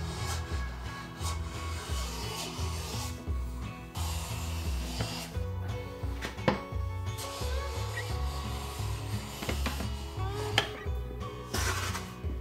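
Hand plane shaving a walnut panel in several long push strokes, each a scraping hiss of a second or more, smoothing the board for finish; background music plays underneath.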